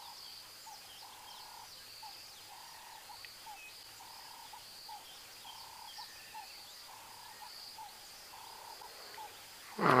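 Bush ambience: a steady high-pitched insect drone, with a lower buzzing call repeating about once a second and a few faint bird chirps.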